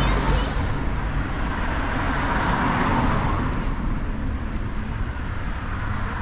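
Road traffic: cars passing on a city road, the tyre and engine noise swelling to its loudest about halfway through and then easing off.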